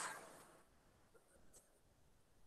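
Near silence in a small room: a chalk stroke on a chalkboard fades out in the first half second, followed by a couple of faint chalk taps.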